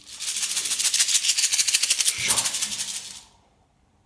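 A hand rattle shaken fast and steadily in an even, rapid pulse, fading out and stopping about three seconds in.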